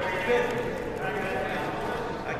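Men's voices talking indistinctly over one another, with room chatter behind them.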